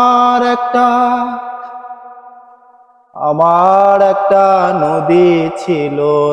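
A man singing a Bengali folk-style song unaccompanied, in long held notes. One note fades away until it is almost silent, and a new phrase begins about three seconds in with a wavering pitch.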